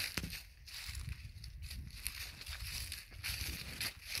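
Footsteps in dry fallen leaves: uneven crunching and rustling with a few sharp crackles.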